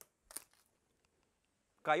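A single short crack about half a second in, as a knife forced through a hanging pork carcass breaks the lower piece away, then near quiet.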